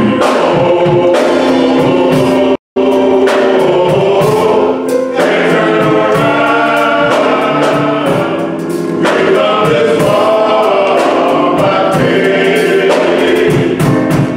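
Men's chorus singing a gospel song in harmony, with drums behind them. The audio cuts out completely for a split second about three seconds in.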